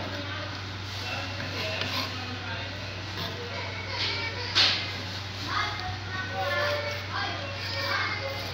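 Children's voices and talk in the background over a steady low hum, with a short loud scrape about halfway through as a kitchen knife pushes diced tomato off a wooden cutting board into a glass dish.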